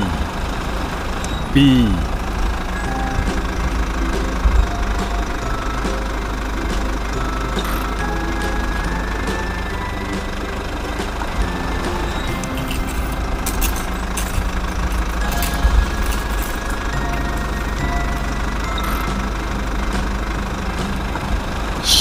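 A person making a steady, lip-trilled 'brrrr' engine noise for a toy bulldozer, with two short falling sounds in the first two seconds.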